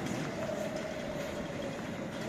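Steady ambient noise of a busy airport terminal hall, an even rumbling hum with a faint steady tone running through it.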